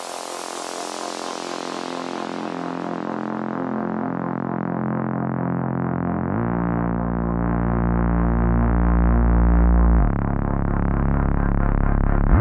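Electronic dance track in a drumless breakdown: sustained synthesizer chords whose bright top end fades away over the first few seconds, swelling slowly louder. A deep bass comes in about halfway, and the chords shift near the end.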